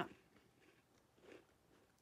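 Faint chewing of a mouthful of wafer cookie, with a slightly louder moment about a second and a quarter in.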